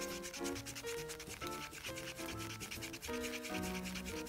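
A quick, steady scraping of a wooden stir stick working thick acrylic paint around a paper cup, under background music with a light melody.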